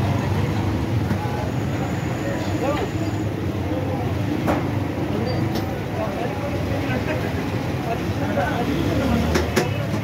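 Busy street-market ambience: a steady low hum of traffic with people's voices in the background, and a few sharp clicks, two close together near the end.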